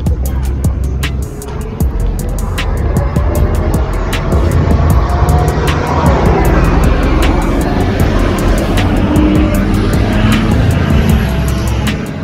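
Background music with a steady beat, over a city bus driving past close by, its engine and tyre noise swelling to its loudest around the middle and easing off toward the end.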